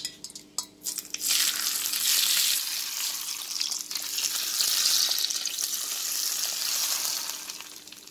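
Hot linseed oil poured from a metal bowl over shakarob salad, sizzling as it hits the vegetables and yogurt-soaked bread. A few light clinks come first, the sizzle starts about a second in, and it fades away near the end.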